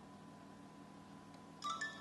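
Quiet room tone with a faint steady hum, then about one and a half seconds in a short two-note chime that steps up in pitch.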